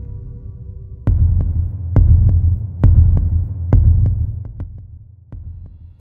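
A deep heartbeat sound effect in the closing score: low double beats, lub-dub, about once a second, coming in about a second in over the tail of a low drone and fading out near the end.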